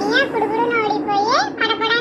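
A child's high-pitched voice speaking without pause, narrating.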